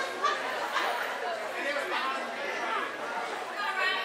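Crowd of spectators talking and shouting, many voices overlapping with no single clear speaker.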